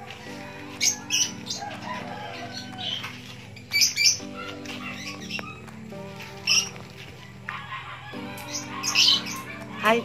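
Short, sharp bird chirps every second or so, the loudest sounds here, over soft background music of long held chords.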